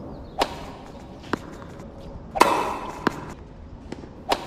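A tennis rally on a hard court: four sharp knocks of the ball off rackets and the court surface, about one a second, the loudest about two and a half seconds in.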